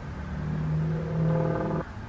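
A woman's closed-mouth hum, a single flat, muffled "mmm" held for about a second and a half.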